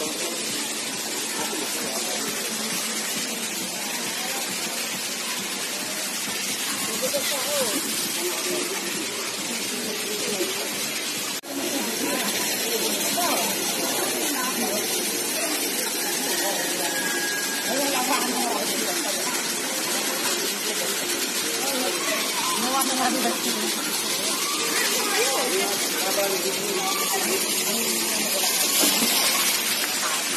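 Steady rush of a small waterfall pouring into a natural pool, with people's voices chattering indistinctly over it.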